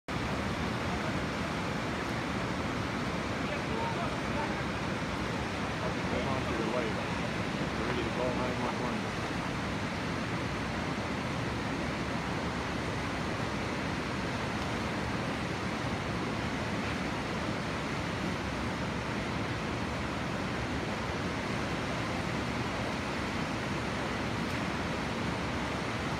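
River rapids rushing steadily: a continuous, even noise of whitewater pouring over rocks, with faint voices in the background.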